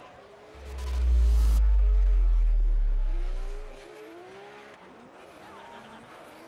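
Drift cars' engines revving and tyres squealing, heard faintly, under a deep low boom. The boom comes in about half a second in, holds for about three seconds and fades, with a short rush of noise near its start.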